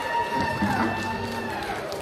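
A single held note from the band's amplified instruments rings out as the song ends and fades away near the end, with people talking over it.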